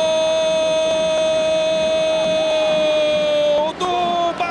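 A Brazilian TV football commentator's long, drawn-out 'Gooool' goal shout. It is held on one steady note, sags slightly and breaks off just before the end.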